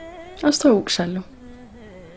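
A woman speaks a short phrase in Amharic about half a second in, over a faint steady droning tone that runs on after she stops.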